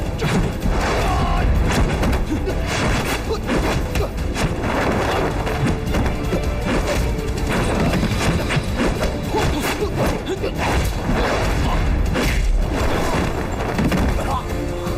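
Fight-scene soundtrack: background music with a rapid run of dubbed punch, kick and body-slam impact effects throughout.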